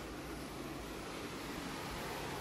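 Steady, even hiss of background noise with no distinct events, growing slightly louder.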